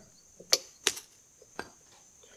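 Three small sharp metallic clicks as a quarter-inch pipe-thread fitting is unscrewed by hand from a cast aluminium Sea-Doo 717 tuned pipe.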